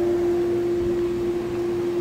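A steady, unchanging machine hum at one fixed pitch over a light background hiss.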